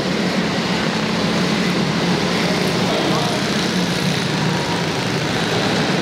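A pack of midget race cars running at speed together, their engines blending into one steady, dense drone.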